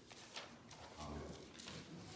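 A quiet room with a few faint knocks and clicks, about half a second and a second and a half in.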